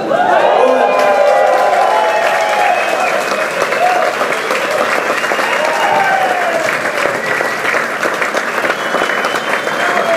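Concert audience applauding and cheering, breaking out suddenly as the song ends, with shouted voices over the clapping.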